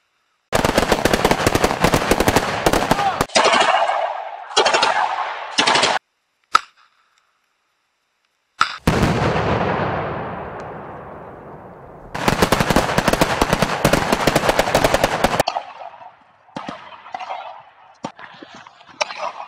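Automatic gunfire in long runs of rapid shots, broken off abruptly several times. About nine seconds in there is one loud blast whose sound dies away over about three seconds, and then another long run of rapid fire.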